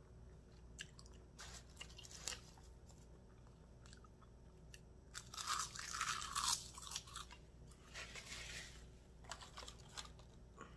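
Close-miked eating sounds: a person chewing a mouthful of spicy instant noodles, with small wet clicks of the mouth. A louder stretch of mouth noise comes from about five and a half to seven seconds in as another mouthful goes in, and a shorter one follows near the end.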